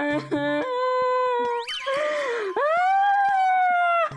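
A boy wailing in long, drawn-out cries. His voice jumps sharply upward and breaks near the middle, then he holds one long cry.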